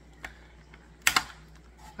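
Plastic clicks as the snap-on filter cover is pulled off a small hydroponic water pump: a faint click about a quarter second in, then a louder snap about a second in.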